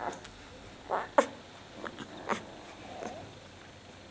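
Leonberger puppy at the teat making short squeaks and grunts, about five in all, spread across a few seconds. A sharp click a little after one second is the loudest sound.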